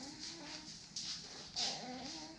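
A baby making small whimpering, cooing vocal sounds. Soft breathy puffs come about a second in and again near the end, the later one the loudest.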